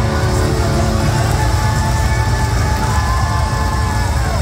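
Live rock band playing at full volume, recorded from the crowd: drums, bass, electric guitar and keyboards with a singer holding long, gliding notes over the top.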